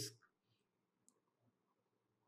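Near silence: room tone in a pause of speech, with a single faint, very short click about a second in.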